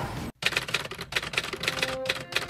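Typewriter sound effect: a rapid run of key clacks, about six a second, starting after a brief dropout, laid over typed-out on-screen text. Faint background music comes in near the end.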